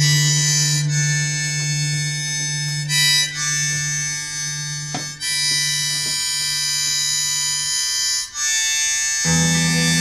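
Harmonica played in long, held high notes with brief breaks between phrases, over a low sustained drone. Near the end the drone drops out, then returns as a fuller low chord.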